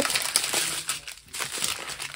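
Small clear plastic zip-lock bags of resin diamond-painting drills crinkling and rustling as they are handled, with a brief lull a little past the middle.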